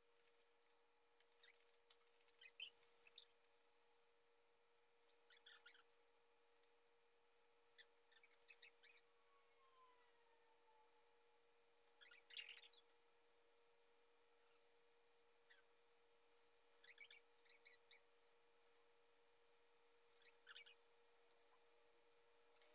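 Near silence under a steady faint appliance hum, broken every few seconds by short bursts of faint, high-pitched whimpering from small dogs, one drawn out into a falling whine about ten seconds in.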